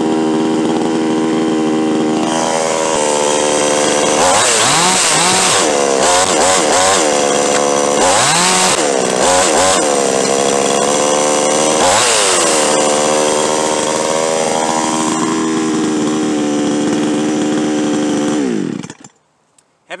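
A 62cc Chinese-made two-stroke chainsaw, a clone of the RedMax/Zenoah 6200, idling, then revved up and back down several times before settling to idle again. Near the end the engine is switched off and winds down to a stop.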